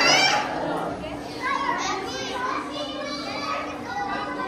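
Children's high-pitched voices calling out over the steady chatter of a crowd, with a loud exclamation at the start and another high call about halfway through.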